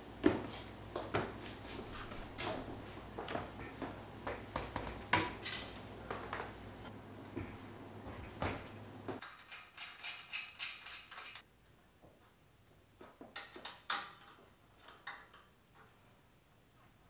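Irregular metal clinks and knocks as a roof-rack wind deflector and its mounting hardware are handled and fitted onto the rack, over a low background hum. The hum drops out about nine seconds in, leaving scattered clicks.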